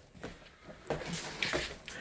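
Faint scuffs and rustles of a large dog in rubber-soled dog boots stepping across a tile floor and onto a cushioned dog bed: a few short, soft sounds.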